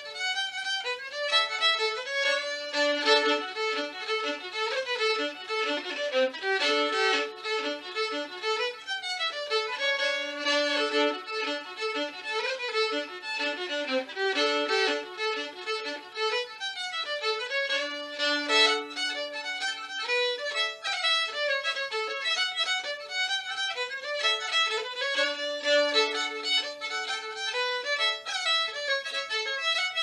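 Solo fiddle playing a lively jig: quick bowed runs of notes, the phrases repeating, with a held low note coming round about every seven seconds.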